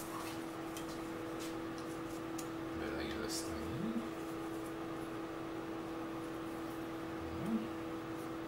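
A steady electrical hum, with faint clicks and rustling as hands fit a metal magnetic knife-rack rail against the wall; two brief murmurs, about halfway and near the end.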